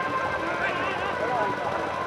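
Faint distant voices of players and spectators calling across an outdoor football ground, with a thin steady tone underneath.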